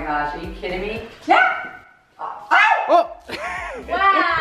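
A pet dog barking a few short times, mixed with people's voices.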